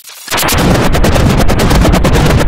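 Loud, heavily distorted logo soundtrack: a dense, rapid crackling rattle that cuts in about a third of a second in and holds steady.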